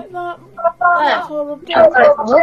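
Speech: women talking, one voice coming through a video-call connection with a thin, telephone-like sound.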